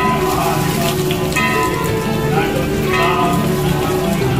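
Water poured from a pot splashing over a stone Nandi statue and running into the basin below, with devotional music playing at the same time.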